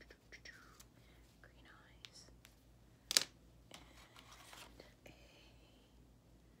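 Wax crayon scratching across paper in short colouring strokes, with one louder scrape about three seconds in.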